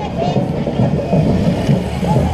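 School fanfarra (marching band) playing as it parades: drums and brass blending into a dense, steady din with a low rumble underneath.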